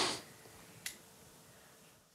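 A short breath at the very start, then a single sharp click a little under a second in, over quiet room tone.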